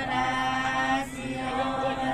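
A group of men and women singing together without instruments, their voices holding long, drawn-out notes in a chant-like song.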